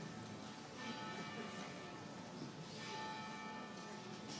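A church bell tolling, faint and reverberant: two strikes about two seconds apart, each ringing on as it fades.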